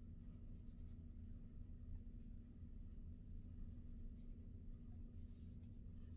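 Faint scratchy strokes of a small flat paintbrush dragging thinned paint across paper: a run of quick strokes about a second in and another, longer run from about three to five and a half seconds in, over a low steady hum.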